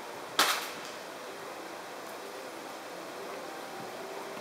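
A single sharp knock or click about half a second in, over steady low background noise.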